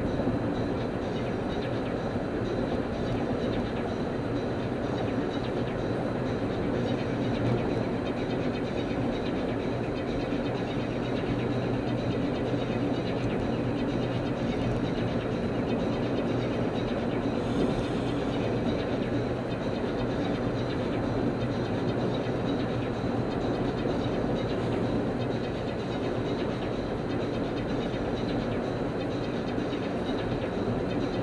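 A car driving at freeway speed: steady road and engine noise with a low drone, even throughout.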